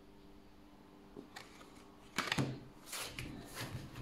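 Oracle cards being handled and set down on a table: about two seconds of near quiet with one faint click, then a few soft taps and rustles.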